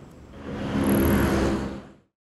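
A motor vehicle's engine running, swelling up about half a second in and fading away near the end.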